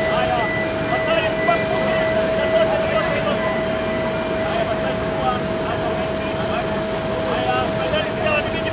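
Steady turbine whine of a parked airliner, a constant high tone over a wide roar, with scattered crowd chatter in the background.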